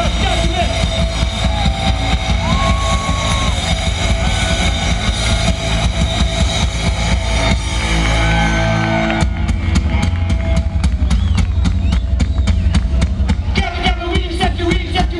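Live punk rock band heard loud from the crowd through the festival PA. About eight seconds in, one song ends on a held chord, and a second or so later the next song starts with a fast, even drumbeat.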